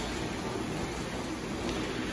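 Steady, even hiss of a large hotel atrium's background noise, with no distinct events.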